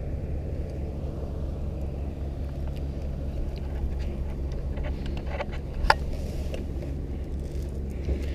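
Pilatus PC-7's PT6A turboprop engine and propeller running steadily at low power, heard from inside the cockpit as a constant low hum. A sharp click about six seconds in, with a few fainter ticks around it.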